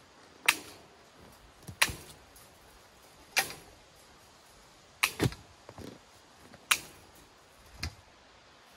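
Clamshell post hole digger jabbed into sandy soil: a series of sharp strikes about every second and a half, some followed by a second, smaller knock.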